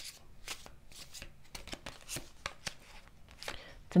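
A deck of tarot cards handled by hand: a run of quick, irregular flicks and snaps of card stock as cards are shuffled and one is drawn and laid on the spread.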